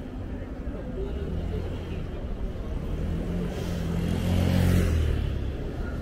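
A car passing close by on the street, its engine and tyre noise building to a peak about four to five seconds in and then falling away.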